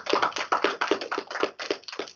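A small audience clapping: a quick run of distinct hand claps, several a second, at the close of a talk.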